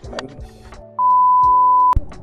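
An electronic beep: one steady pitch held for about a second, starting halfway in and cutting off with a sharp click. Background music plays under it.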